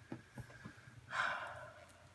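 A person's short breath out through the nose, about a second in, after a few faint small clicks of handling.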